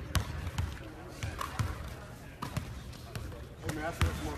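Basketballs bouncing on a hardwood gym floor: five or six separate thuds at irregular intervals, not a steady dribble.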